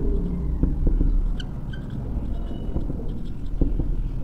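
Whiteboard marker writing: faint scratches and light ticks of the felt tip on the board, over a steady low rumble.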